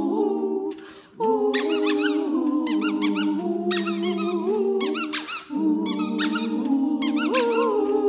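Several women's voices holding notes in close a cappella harmony, breaking off briefly about a second in. Four times over the held chord, short bursts of high, wavering squeaks ring out.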